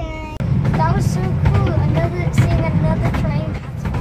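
Low, steady rumble of a moving steam railway carriage running along the track, setting in about half a second in, with a young child talking over it.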